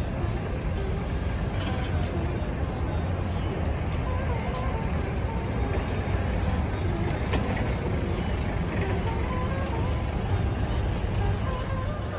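Open-air airport forecourt ambience: a steady low rumble with faint distant voices.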